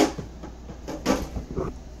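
Packed groceries being rummaged through in a cardboard box, plastic packaging and boxes shifting against each other. A sharp knock comes right at the start, then another rustle about a second in.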